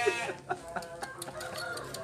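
A rooster crowing: a long held call that ends shortly after the start, then fainter drawn-out tones and a few light clicks.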